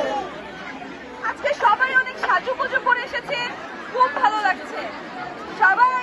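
Speech: a woman addressing a crowd through a microphone, with chatter from the crowd around her.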